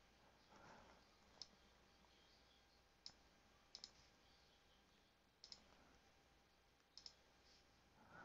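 Faint computer mouse clicks against near silence: two single clicks, then three quick double clicks.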